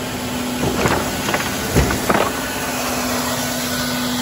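Kärcher B 150 R ride-on scrubber-sweeper running with a steady hum while its front sweeping brooms pick up debris: a quick series of clattering knocks from about a second in, the loudest just before the two-second mark.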